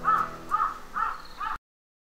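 A bird calling in short, repeated, arched calls, about three a second, until the sound cuts off abruptly about one and a half seconds in.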